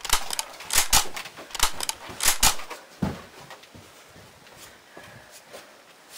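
A quick run of loud, sharp knocks and clicks in the first two and a half seconds, a low thump about three seconds in, then only a few faint clicks.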